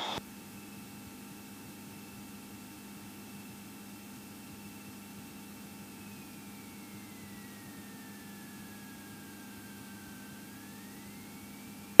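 Commander 112 single-engine light aircraft taxiing, its engine and cockpit noise heard as a faint steady hum through the headset intercom. A thin high whine runs over it, sliding down in pitch about six seconds in and climbing back near the end.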